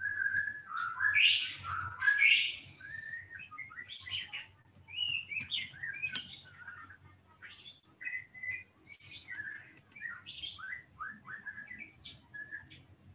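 Small birds chirping repeatedly: short, quick chirps that rise and fall in pitch, one after another.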